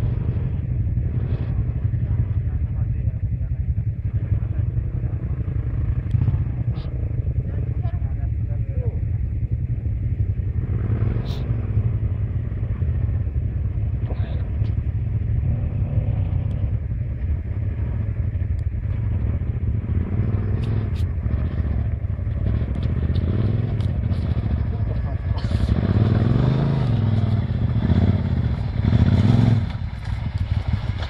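Enduro motorcycle engines running on a dirt trail: a steady low engine drone throughout, with revs rising and falling as bikes ride up the track, loudest in the last few seconds.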